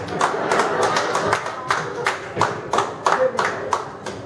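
Hand-clapping in a steady rhythm, about four claps a second, with a few short pitched notes in between.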